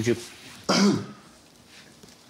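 A man clears his throat once, a short, loud rasping burst about two-thirds of a second in, following a one-word spoken question.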